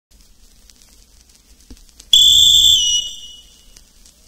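A whistle blown once about halfway in: a loud, steady, high note that dips slightly in pitch and fades away, the apito that calls the start of a bumba-meu-boi toada. Before it, only faint hiss and clicks from the old recording.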